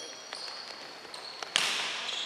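Basketball game noise in an echoing gym: high sneaker squeaks on the hardwood floor, a faint tap early on, and one sharp bang with echo about one and a half seconds in.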